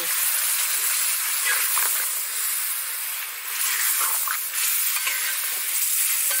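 Pointed gourd (parwal) and soya chunks frying in spiced masala in a steel kadhai, a steady sizzle while a steel spatula stirs them.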